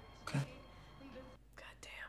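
Quiet speech: a man's voice says a short "Okay" about a third of a second in, followed by faint, breathy whispered sounds.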